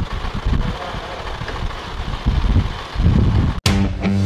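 Low, uneven rumble of wind on the microphone over street background noise. Near the end it cuts off sharply and rock music with guitar starts.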